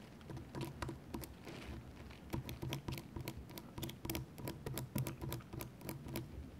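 Close-miked ASMR handling sounds: fingers and a small tool making irregular soft clicks and taps, several a second, over a low rumble.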